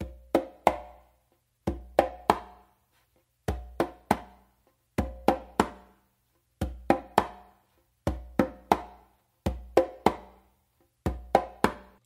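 Conga played by hand: a three-stroke figure repeated eight times, each a low open bass tone followed by two sharp closed slaps. It contrasts an ordinary closed slap with one made with the index finger lifted to pull the skin, the old-school way, which sounds a little higher.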